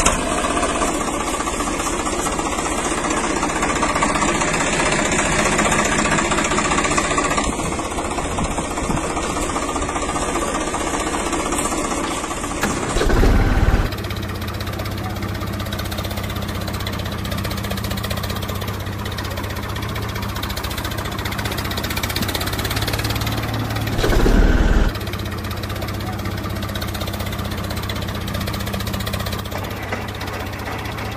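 Tractor engine sound running steadily at idle-like speed, its tone changing about twelve seconds in. Two short, loud low bursts come about halfway through and again near the end.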